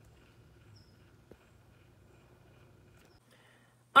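Faint low hum of a small cup-turner motor slowly rotating a freshly epoxied tumbler, with a single faint tick about a second in.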